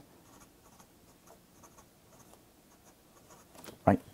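Pen writing on paper: faint, irregular scratching strokes as a line of an equation is written out.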